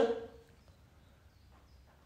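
A voice trailing off in the first half second, then near silence: room tone.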